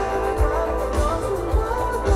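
Live pop-rock band playing through a PA, with a lead vocal sung over electric guitar, bass, keyboard and a steady kick-drum beat.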